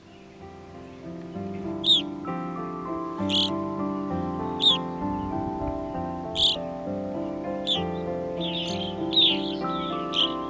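Soft instrumental music of slow sustained notes fades in, with short, sharp evening grosbeak calls over it every second or so, coming more often near the end.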